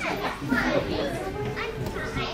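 Indistinct chatter of young children's voices, several overlapping.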